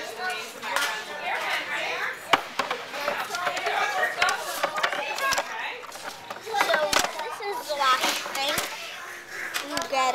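Children talking and playing, their voices running on through the whole stretch, with several sharp knocks and bumps in between.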